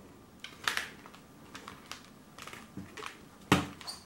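Hands handling a cardboard CD photobook package: a few faint scrapes and light taps, then a sharp, louder knock about three and a half seconds in as the package is opened.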